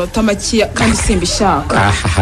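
Radio-drama dialogue: voices speaking, with a few short sharp sounds among the words.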